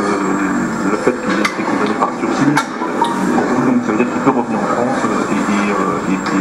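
Indistinct hubbub of many overlapping voices from a crowd of reporters pressing around an interviewee, with a few sharp clicks scattered through it.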